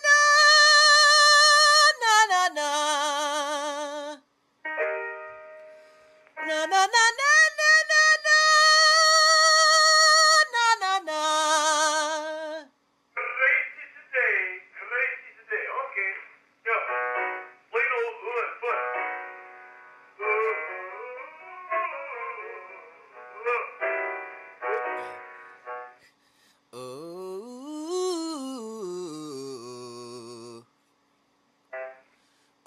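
A male singer running a vocal exercise, singing quick "no" syllables and holding two long high notes with a wide, even vibrato, then a run of short notes. Near the end a lower voice slides up in pitch and back down.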